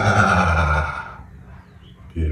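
A man's loud, voiced sigh out on 'ah' after a big breath in, dropping lower in pitch and trailing off into a breathy exhale that fades out about a second in.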